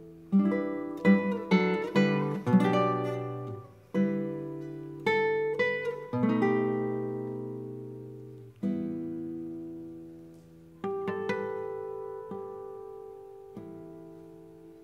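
Nylon-string classical guitar played solo: a quick cluster of plucked chords in the first few seconds, then single chords left to ring and fade for two or three seconds each, with a few more notes near the end.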